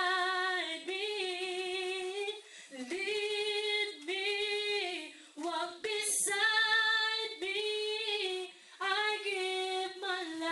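A woman singing a worship song solo, holding long notes with slight wavering in phrases of a second or two, with short breaks for breath between them.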